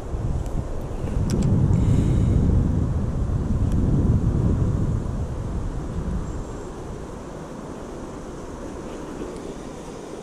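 Wind buffeting the camera microphone in a low rumble, heaviest for the first six seconds and then easing, with a few light clicks of fishing tackle being handled.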